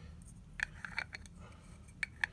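Faint handling clicks of a rear lens cap being fitted onto the Nikon mount of an M42-to-Nikon adapter on a lens, a series of small clicks from about half a second in.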